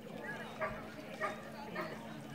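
A dog barking three times, short barks a little over half a second apart.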